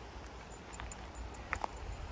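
Footsteps along a dirt forest trail littered with twigs, with a few faint clicks and crackles about a second and a half in, over a low steady rumble on the phone's microphone.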